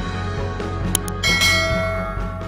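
Intro music with a sharp click about a second in, then a bright bell chime that rings and slowly fades: the notification-bell sound effect of a subscribe animation.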